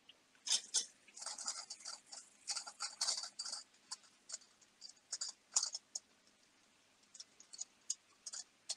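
Metal spoon stirring spinach in a frying pan, scraping and clicking against the pan in irregular bursts, busiest in the first few seconds and again around five to six seconds in.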